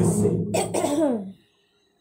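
A man's amplified voice ending a phrase, its last syllable sliding down in pitch, with short breathy bursts that may be a cough or throat-clearing; the sound cuts off to silence about two-thirds of the way through.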